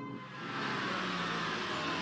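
A car driving along a street, a steady engine and tyre sound that swells in about half a second in and holds.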